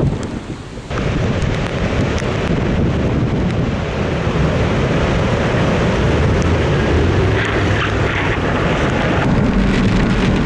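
Strong wind and heavy rain on a vehicle driving down a rain-soaked road, with wind buffeting the microphone. The noise drops for about the first second, then runs on steady and heavy.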